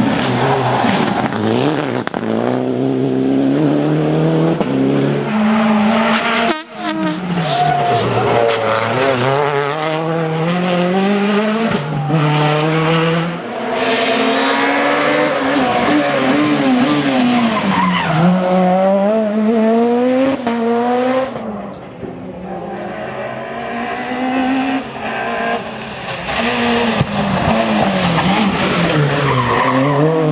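Rally cars driven flat out on a tarmac stage, one after another: engines revving up hard and dropping back through gear changes and braking, with tyre squeal. The engine note climbs and falls over and over, broken by sudden cuts from one car to the next.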